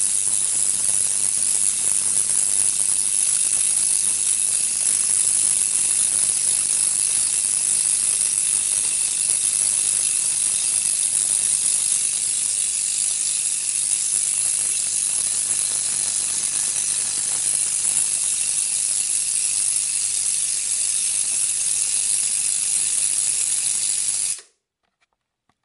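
Multi-gap spark gap fed by a 230 V / 9 kV, 50 mA neon sign transformer, firing continuously with a steady, dense crackling buzz over a low mains hum. A 2 nF Leyden jar wired in parallel makes each discharge stronger.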